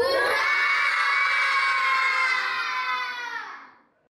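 A group of children shouting together in one long, held cheer that sinks slightly in pitch and fades out about three and a half seconds in.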